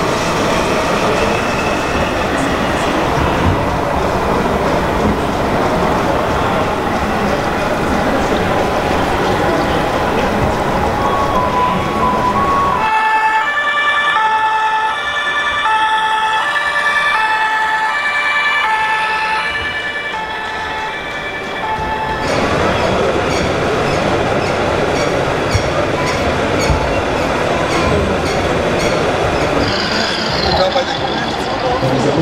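Two-tone siren from a scale RC model fire truck's sound module, alternating between a high and a low note about once a second, clearest from about halfway through for roughly nine seconds. Around it is the busy, echoing noise of a large hall.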